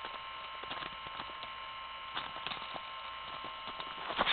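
Steady electrical hum with several faint, high, steady whining tones, broken by a few faint soft clicks.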